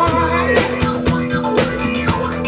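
Live blues-funk band playing: a drum kit keeps a steady beat under held bass and electric guitar notes.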